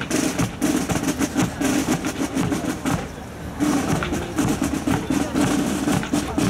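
Marching drum corps playing a cadence on snare drums and bass drums, with a short lull about three seconds in.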